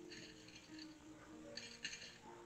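Very faint background music with soft held notes, under light rustling from hands handling the fabric and the plate of pins, with a small click near the end.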